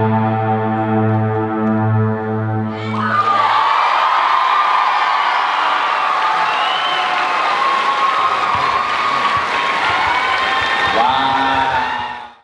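A held, droning chord of the dance music sounds and stops about three seconds in, and an audience then breaks into applause and cheering, with whoops and shouts over the clapping.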